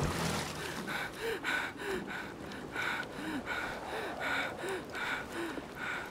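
A woman panting in fright: quick, shallow gasping breaths, about two to three a second, with small high voiced whimpers on some of them.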